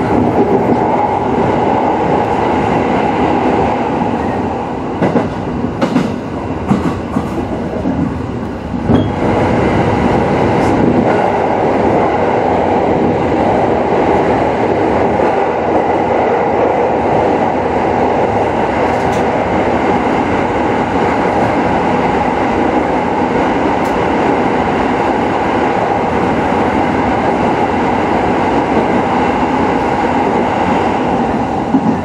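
209 series electric train running on the rails, heard from inside the front car: a steady rumble of wheels on track. A few sharp clicks come between about five and nine seconds in, after which the running noise is louder and steadier as the train runs through a tunnel.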